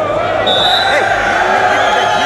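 Arena crowd of many voices shouting and cheering loudly during a freestyle wrestling bout.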